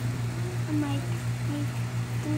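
Soft, short murmured voice sounds, a few brief hums, over a steady low hum that carries on throughout.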